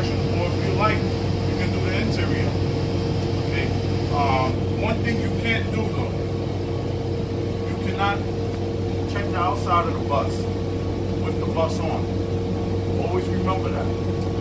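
Parked city transit bus running at idle, heard inside the passenger cabin: a steady low hum with a couple of even droning tones.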